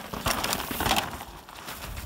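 Mountain bike riding down a dirt singletrack: tyres crunching over the ground with irregular knocks and rattles, loudest in the first second.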